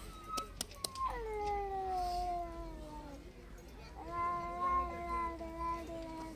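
Two long, drawn-out vocal calls. The first starts about a second in and falls slowly in pitch over about two seconds; the second holds a steady pitch through the last two seconds. A couple of sharp slaps near the start come from dough being kneaded by hand.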